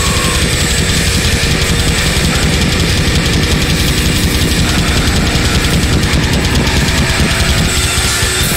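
Metal band playing live and loud: a fast, unbroken run of double-bass-drum kicks under distorted bass and guitar and crashing cymbals.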